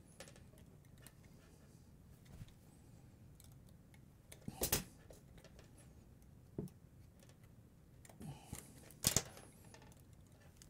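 Faint, sparse metallic clicks and ticks from linesman's pliers and stripped copper conductors as the wires are gripped and twisted together. The sharpest clicks come about halfway through and again near the end.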